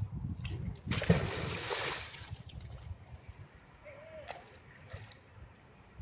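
A fishing magnet on a rope landing in canal water with a splash about a second in, the splash lasting about a second. A few light clicks follow a few seconds later.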